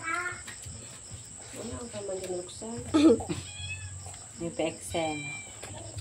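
A string of short, high-pitched vocal calls, several bending in pitch, with no recognisable words; the loudest comes about three seconds in.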